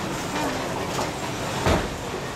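Bowling alley din: bowling balls rolling down the lanes with a steady rumble, and a single sharp knock near the end.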